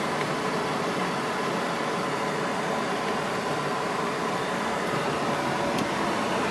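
Steady running noise inside a classic car's cabin: the engine running with an even, fan-like hiss over it.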